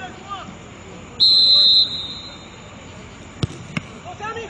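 Referee's whistle blown once, a short, shrill blast of about half a second, signalling the free kick to be taken. Two sharp knocks follow near the end.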